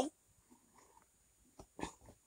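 Near silence: room tone, with two brief faint sounds near the end.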